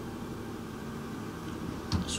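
Steady low mechanical hum of room background noise, with no typing or voice.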